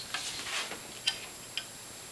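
Handling noise from a compound bow being turned over in the hands: a few soft, scattered clicks and rustles over faint room hiss.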